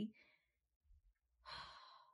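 A woman's breathy sigh about a second and a half in, after a near-silent pause.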